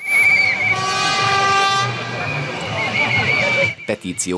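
Street protest march: shrill whistles trilling at the start and again near the end, with a loud horn blast held for about a second in between, over crowd noise.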